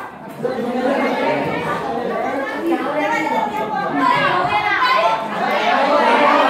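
Many students' voices talking over one another, a loud classroom chatter that grows louder toward the end.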